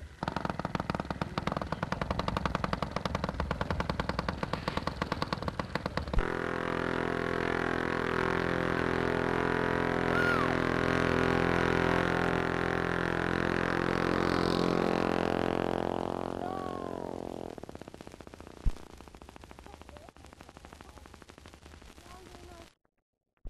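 Westbury two-stroke model aeroplane engine running: a fast, rattling stream of firing strokes for about six seconds, then a smoother, steady running note that fades away after about sixteen seconds as the model flies off. A single sharp knock comes near the end.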